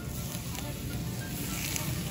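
Wine poured from a bottle over fish in a hot cast-iron pan, with a faint sizzle and patter over the low steady rumble of a wood fire in the oven.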